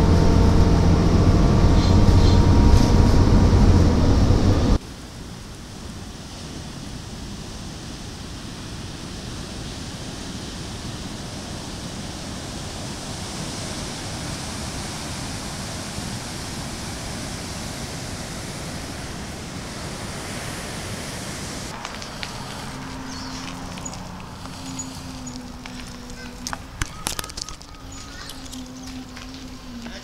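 A loud sound with several steady tones for the first five seconds, cutting off suddenly. Then a steady wash of ocean surf and wind, with a few faint clicks and a low tone near the end.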